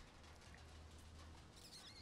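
Near silence: faint outdoor room tone with a low steady hum, and a faint high wavering chirp near the end.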